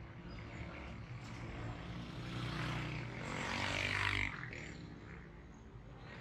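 A motor vehicle's engine passing close by on the street. It grows louder to a peak about four seconds in, then falls away suddenly.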